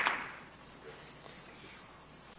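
The tail end of an audience's applause: a last sharp clap right at the start, and the clapping dies away within about half a second, leaving faint room tone.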